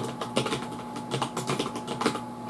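Computer keyboard typing: a quick run of about a dozen keystrokes as a type name is typed into a code editor.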